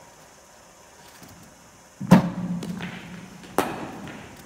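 A loud thud about halfway through from the bowling machine sending down a ball, with a short low hum after it, then the sharp crack of a cricket bat hitting the ball near the end.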